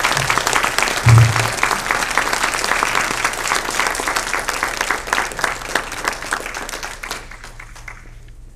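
Audience applauding, steady clapping that thins out and fades near the end. A low thump about a second in.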